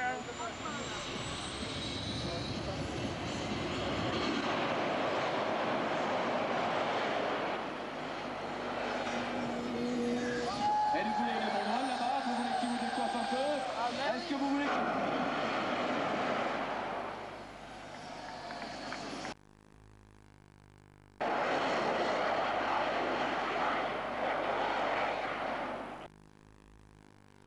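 Engine of a small yellow ride-on kart running on a race track, mixed with voices from the crowd or a loudspeaker. The sound cuts out for about two seconds near the end, then returns.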